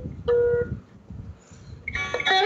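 A veena note held for about half a second, with low knocks and rumbles like the instrument being handled. Then veena playing starts just before the end, on the same pitch.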